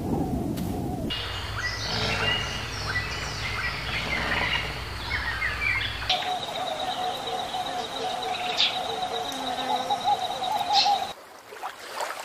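A run of spliced animal calls: after a brief low rumble, about five seconds of short chirping birdlike calls, then a long, steady, wavering call of about five seconds that cuts off abruptly near the end.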